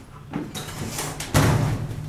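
A front door being unlatched and pushed open, with a small knock about half a second in and a louder knock about one and a half seconds in.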